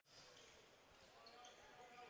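Near silence: faint room tone of an indoor basketball stadium.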